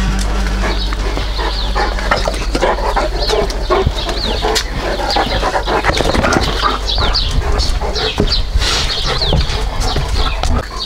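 Small birds chirping in quick short calls, over a run of footsteps on paving slabs.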